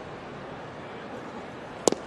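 Steady ballpark crowd ambience, then near the end one sharp pop as a pitched baseball smacks into the catcher's mitt for a called strike.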